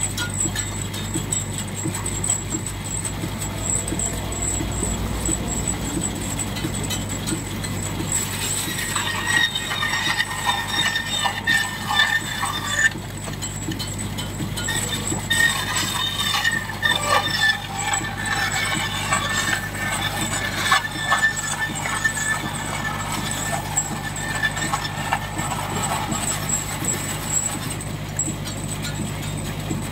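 Vintage cast-iron bandsaw, belt-driven by a portable steam engine, running with a steady low hum. From about a third of the way in, its blade cuts through timber with a rough, whining sound, broken by a short pause midway.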